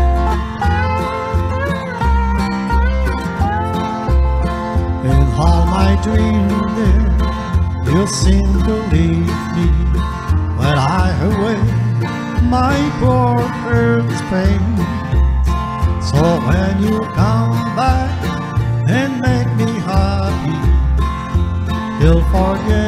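Country-style instrumental break: a Fender Telecaster-type electric guitar plays a lead line with bent, sliding notes over a backing track with a steady bass pulse.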